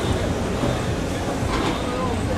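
Steady low rumble of a vehicle engine running close by, mixed with street noise.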